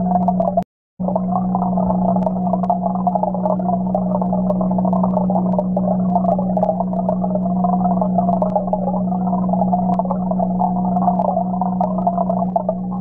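Aquarium heard through a camera submerged in the tank: a steady low hum with a churning, bubbling wash from the stream of aeration bubbles. It drops out for a moment about a second in.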